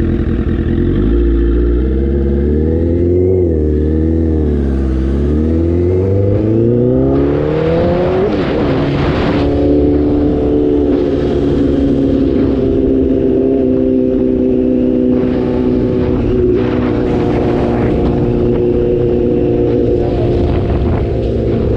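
Motorcycle engine idling, then pulling away about a second in and accelerating up through the gears, its pitch climbing and dropping back with each shift, then holding a steady cruise for the second half. Bursts of wind rush over the microphone at speed.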